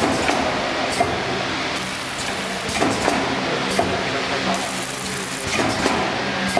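Automatic packaging machine with pneumatic actuators running: a steady mechanical hum with sharp clicks or knocks repeating about once a second as it cycles.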